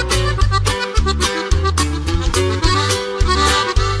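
Norteño music instrumental passage: an accordion plays the melody over bass notes and a steady percussion beat, with no singing.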